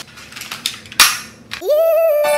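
A single sharp crack about a second in, fading over half a second, with a few faint clicks before it. Near the end, a high held tone glides up and then holds steady.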